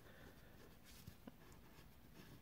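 Near silence: quiet room tone with a couple of faint ticks around the middle.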